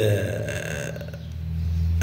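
A man's low, drawn-out hesitation sound, a held 'eeh' between words, that grows louder toward the end.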